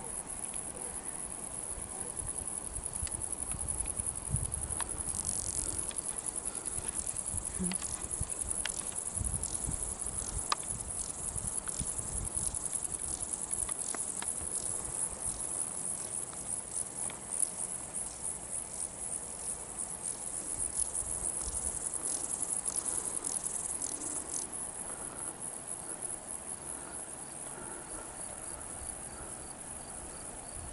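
Insects in a mountain meadow, crickets or grasshoppers, chirping: a steady high-pitched buzz with rapid chirps that is thickest through the middle and thins near the end, over a faint low rumble.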